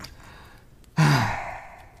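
A person's long, exasperated sigh about a second in, breathy and falling in pitch as it fades.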